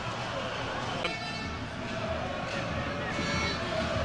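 Stadium crowd ambience, a steady haze of noise from the stands, with faint horn-like toots sounding about a second in and again later.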